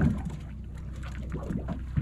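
Steady low rumble and faint wash of a boat at sea, with a short knock at the start and another at the end.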